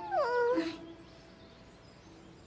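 A cartoon character's short whimper, one sad vocal sound sliding down in pitch within the first half-second, followed by a quiet stretch.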